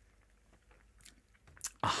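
Faint sipping of a cocktail through a drinking straw, then a few small mouth clicks near the end.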